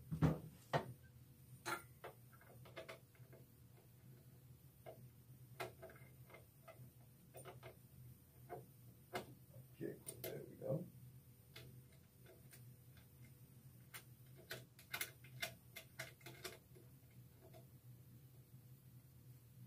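Sparse light clicks and taps of heat press hardware being handled as the mug press attachment is connected to the press's control box, over a low steady hum.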